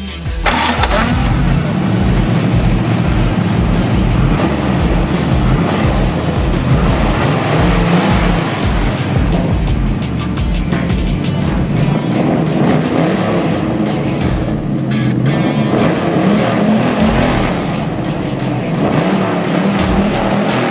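1968 Chevrolet Camaro's 6.5-litre (396 cubic inch) big-block V8 starting and running loud, with a deep, uneven firing beat whose pitch rises and falls a little as the throttle is worked.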